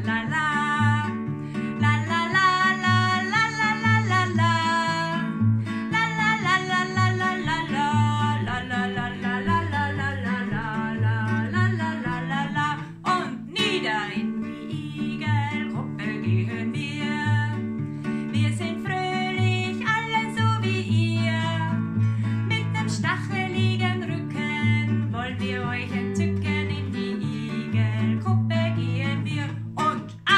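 A woman singing a German children's song, accompanying herself on a nylon-string classical guitar.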